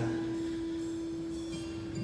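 A single sustained instrumental note from a worship band, held steady at a soft level, ending just before the end.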